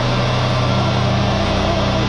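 Heavily distorted electric guitars and bass holding one low chord that rings on steadily, with no drums playing.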